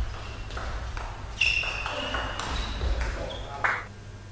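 Table tennis ball striking rackets and the table in a rally: several sharp clicks at uneven intervals over the hum of a sports hall.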